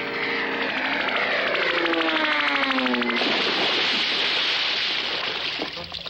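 Cartoon sound effect for the missile bird's flight: a buzzing whistle falls steadily in pitch for about three seconds, then gives way to a steady rushing hiss that lasts until near the end.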